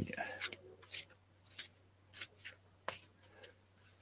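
A deck of tarot cards being shuffled by hand: faint, irregular soft clicks and snaps of the cards against each other.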